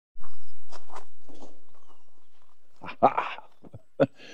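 A few footsteps crunching on gravel, the loudest near the end, with faint bird chirps behind them.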